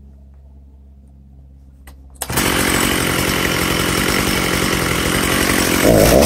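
Makita DCS6421 64 cc two-stroke chainsaw idling quietly, then opened up to full throttle about two seconds in and held steady at high revs.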